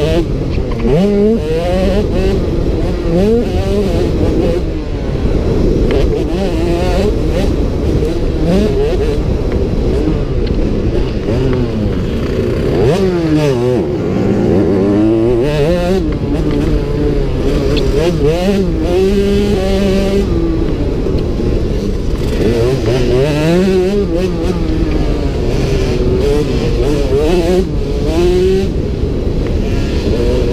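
Motocross bike engine, heard from a camera mounted on the bike, revving up and falling away again and again as the rider works the throttle and changes gear on a dirt track.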